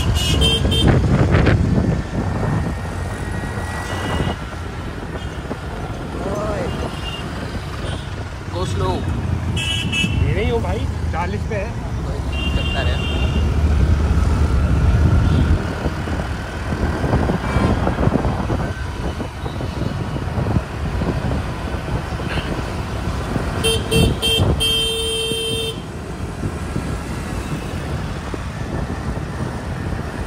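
Riding a two-wheeler through city traffic: steady engine and road noise, with vehicle horns honking several times, the longest for about two seconds near the end.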